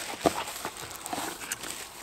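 Tissue packing paper rustling and crinkling in a cardboard box, with a few irregular light knocks as a plastic power adapter and its cable are handled and lifted out.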